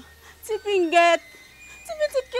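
A woman's high-pitched voice in one short, drawn-out exclamation lasting under a second, starting about half a second in.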